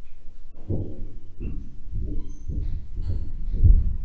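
Electroacoustic music excerpt playing over loudspeakers: a run of low, muffled knocks at about three a second, with a few faint high tones above them. The material is a recording of a knocking-based piece, compressed toward a low register.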